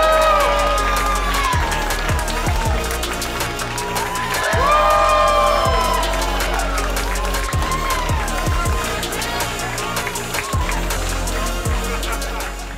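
Walk-on music with a steady bass and sliding melodic lines, over an audience cheering and applauding.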